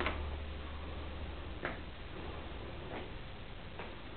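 Four sharp clicks at uneven intervals, a second or more apart, over a low steady hum that weakens about halfway through.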